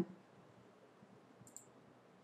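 A faint computer mouse click, a quick pair of clicks, about one and a half seconds in, against near-silent room tone.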